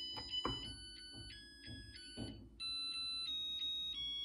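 Zojirushi NP-HTC10 rice cooker playing its electronic start-up jingle after the Cooking button is pressed: a short melody of clear beeping notes that step up and down in pitch, signalling that the porridge cooking cycle has begun.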